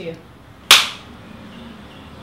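Film clapperboard's hinged sticks snapped shut once, about two-thirds of a second in: a single sharp clap with a quick decay, the sync mark for the take.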